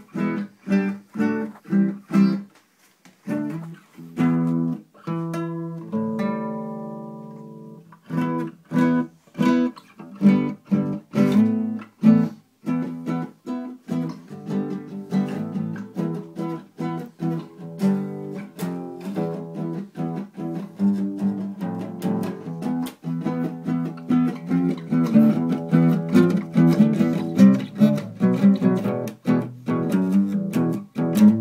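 Acoustic guitar played by hand, chords plucked and strummed. About six seconds in, one chord is left to ring out for a couple of seconds, and the notes come quicker and busier toward the end.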